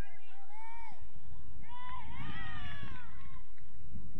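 Several voices shouting and calling out at once in short, high-pitched calls, most of them bunched about two to three seconds in, over a low rumble.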